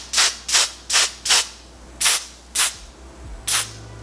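Quick spritzes from a pump spray bottle of lace melting spray onto a wig's lace hairline: about seven short hisses in an uneven run.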